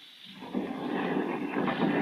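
Radio-drama sound effect of a horse-drawn carriage setting off: a rumbling, rattling noise that rises out of silence about half a second in and builds steadily.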